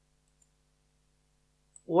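Near silence, then a single faint computer mouse click near the end.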